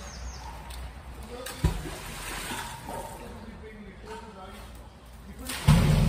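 Canal water lapping and sloshing at the towpath edge, with a sharp knock about a second and a half in and a loud low rumble starting near the end.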